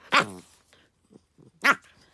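Puppy giving two short, sharp barks about a second and a half apart while it play-bites its owner.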